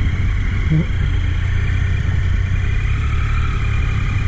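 Motorcycle engine running steadily at low speed, with no rise or fall in revs.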